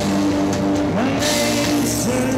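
A live rock band playing on electric guitars, keyboard and drums, with held notes that slide up in pitch about a second in and again near the end.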